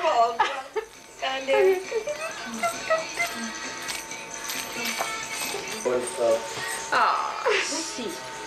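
Indistinct talk among several people and background music, with a light jingling rattle now and then.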